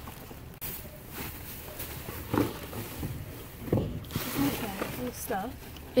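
Plastic bags and bubble wrap crinkling in short spells as hands rummage through them, with faint, low voices.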